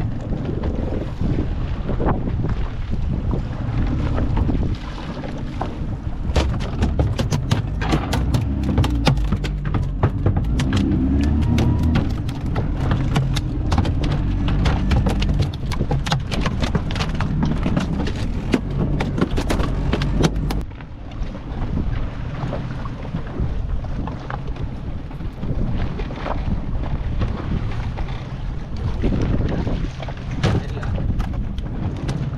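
Wind buffeting the microphone over a steady low rumble on a small fishing boat at sea. From about six seconds in there is a rapid, irregular run of sharp knocks lasting about fifteen seconds: freshly caught mahi-mahi thrashing on the fibreglass deck.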